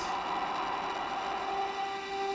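Haken Continuum fingerboard sounding a diffuse, noise-like tone, the finger placed toward the back of the playing surface (y at one). A steady pitched tone comes in about one and a half seconds in.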